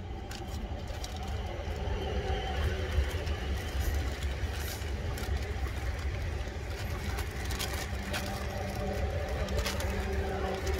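Clear plastic magazine wrapper being pulled and torn open by hand, with crinkles and sharp crackles that come thickest about three seconds in and again near the end, over a steady low rumble.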